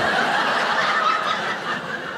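Audience laughing at a stand-up comedian's punchline. The laughter dies down a little near the end.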